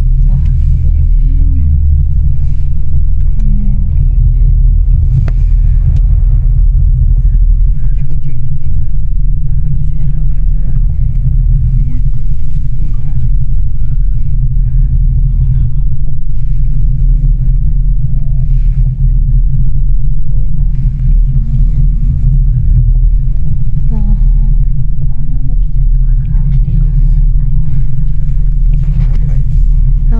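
Steady low rumble inside a ropeway gondola cabin as it rides along its haul cable.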